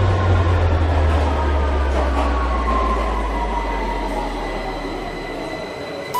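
The end of an electronic dance track fading out: a deep, steady bass drone under a wash of noise, with a high tone that slowly falls in pitch, all dying away toward the end.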